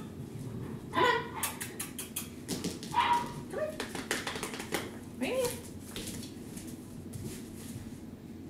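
A poodle puppy giving a few short barks and yips, at about one, three and five seconds in.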